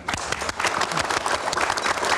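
Studio audience applauding: many people clapping together, breaking out suddenly and keeping up steadily.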